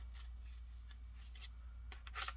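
Tarot cards being shuffled overhand by hand: a few soft sliding rasps as cards slip between the hands, mostly in the second half, over a steady low hum.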